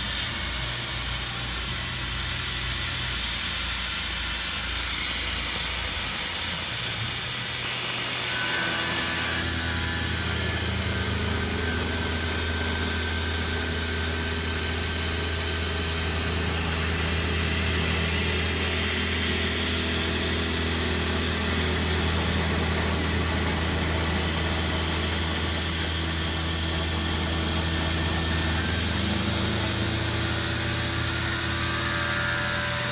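Tormach PCNC 770 CNC mill's spindle running at about 4,500 RPM as a four-flute carbide end mill cuts quarter-inch steel plate, with the steady hiss of a Fog Buster coolant mister. The machine's low hum changes about eight seconds in, then holds steady.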